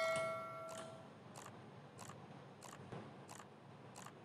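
A faint, even ticking, about three ticks every two seconds. A bell-like ringing tone fades out about a second in.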